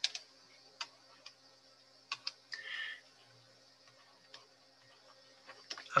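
Faint, scattered clicks and taps of a stylus on a tablet screen while writing by hand, about seven in all, with one short scratchy stroke about two and a half seconds in.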